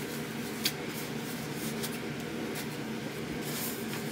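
Steady low hiss of room tone with a few faint rustles and small ticks from a fabric shower cap being adjusted and pinned on the head.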